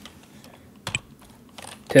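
A few scattered keystrokes on a computer keyboard as a short name is typed, the clearest click about a second in.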